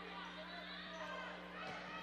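Quiet arena room tone with a steady low electrical hum and faint distant voices.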